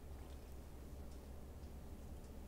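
Quiet room tone: a faint, steady low hum with a few soft clicks.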